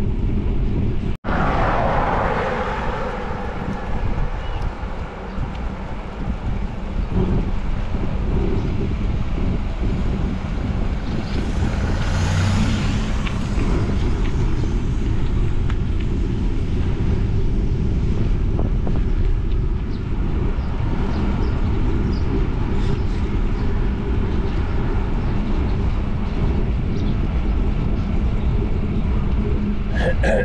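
Wind buffeting the microphone of an action camera on a moving bike, a steady low rumble that drops out for an instant about a second in and swells briefly near the middle.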